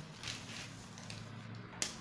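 Faint rustle of brown pattern paper being slid and turned on a table, with one sharp click near the end, over a low steady hum.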